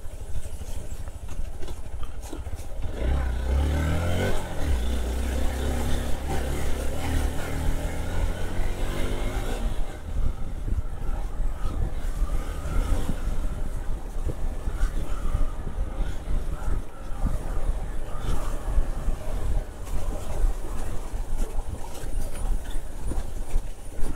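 Motorcycle engine running at low speed over a rough dirt track, its pitch rising and falling with the throttle from about three to ten seconds in, under a steady low rumble.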